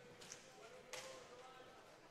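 Near silence: faint rink hockey arena ambience, with two faint sharp knocks about half a second apart, typical of stick and ball on the rink.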